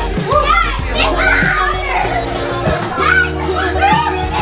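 Loud party music with sustained bass and chords, with children shouting and chattering over it.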